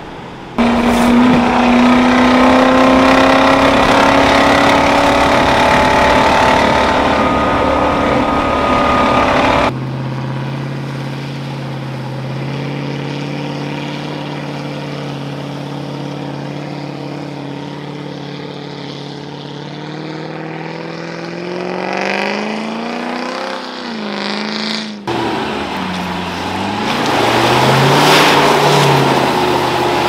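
Land Rover Discovery 1's V8 engine driving under load across a few cut-together takes. The sound changes abruptly twice: a steady drone, then revs that climb in pitch about two-thirds of the way through, and revs rising and falling near the end.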